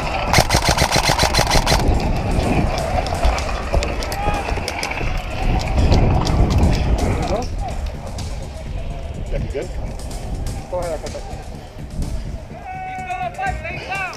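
An airsoft rifle firing one full-auto burst of about a second and a half, the shots coming about a dozen a second.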